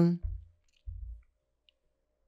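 A woman's voice trails off at the end of a spoken phrase. In the pause that follows come two short, faint low thumps about half a second apart.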